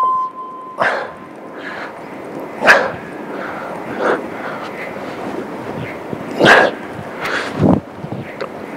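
A long electronic beep from an interval timer cuts off about a second in, marking the start of a new minute. A man then breathes out hard and grunts with the effort of his press-ups, about seven times, unevenly spaced, with two louder ones.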